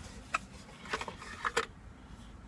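Cardboard box being opened by hand and the packaging inside handled, giving a few short, light scrapes and taps.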